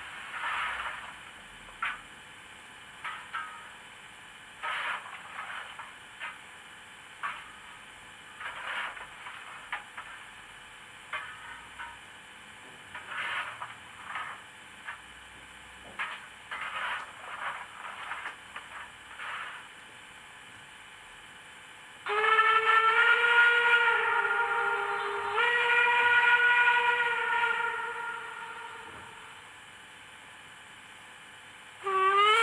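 Model steam locomotive sound: irregular short bursts of steam hiss, then one long steam whistle that shifts slightly in pitch partway through and fades away.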